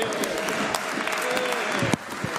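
Applause from parliament members in a debating chamber, many hands clapping at once with a few voices underneath. It cuts off abruptly near the end.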